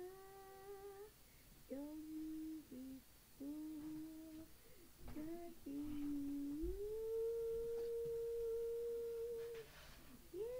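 A young voice humming a wordless tune on a voice-memo recording: short held notes with little slides between them, then one long steady note through most of the second half.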